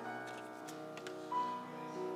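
Grand piano playing slow music, sustained notes ringing, with a new higher note struck about a second and a half in. A few faint clicks sound over it early on.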